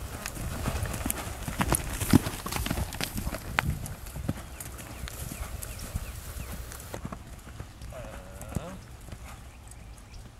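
A horse's hoofbeats on sandy arena footing as it lopes under a rider, the strikes coming quickly and loudest in the first few seconds, then softer and sparser as it slows down.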